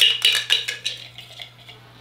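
Metal Funko Soda can being twisted open: a quick run of metallic clicks and scrapes from the tin can and its lid, thinning out and dying away after about a second and a half.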